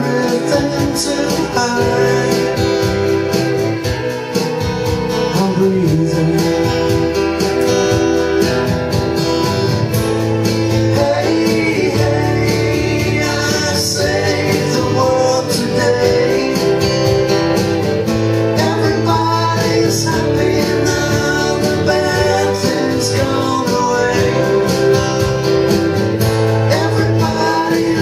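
Acoustic guitar strummed steadily through a live song, with a man's voice singing in places.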